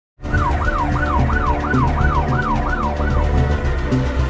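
Emergency siren in a fast wail, its pitch rising and falling about three times a second, over intro music with a deep low drone. The siren stops about three seconds in while the music carries on.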